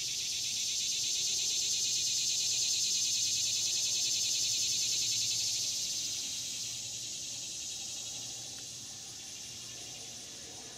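Summer insect chorus: a high, rapidly pulsing buzz that swells to a peak about three seconds in and then slowly fades.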